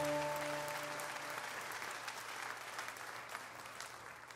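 The last chord of a semi-hollow electric guitar rings out and dies away in the first second, under crowd applause that fades steadily toward silence near the end.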